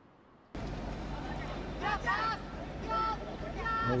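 Dead silence for about half a second, then open-air sound from a football pitch cuts in: a steady background hiss with a low hum, and faint shouts from players calling to each other, about three calls near the middle and end.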